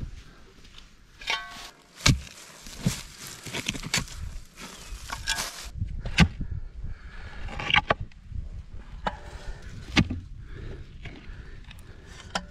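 Hole being dug by hand with a shovel and a clamshell post-hole digger: the blades strike into the dirt with a sharp hit every second or few, with scraping and loose soil rustling between the strikes.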